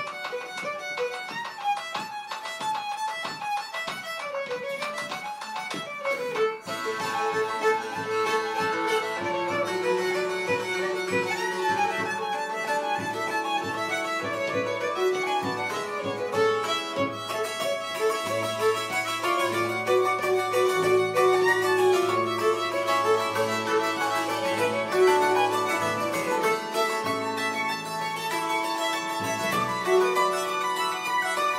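Fiddle, hammered dulcimer and double bass playing a reel together, the fiddle carrying the melody over the dulcimer's quick struck notes. From about six seconds in the sound grows fuller and a little louder, with a bass line underneath.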